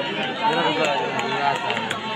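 Many voices of a crowd of spectators talking and calling out at once, overlapping with no single speaker standing out.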